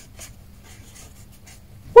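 Faint scratching of a felt-tip pen writing a short word on notebook paper.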